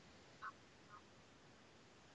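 Near silence: faint room hiss, with two brief faint chirps about half a second apart near the start.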